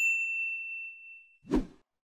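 A single bright, bell-like ding that rings and fades away over about a second and a half, followed by a brief low thump near the end.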